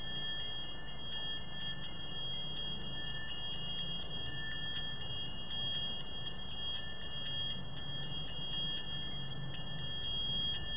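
Altar bells shaken continuously, a bright jingling ring of small bells, marking the priest's blessing with the raised monstrance at Benediction.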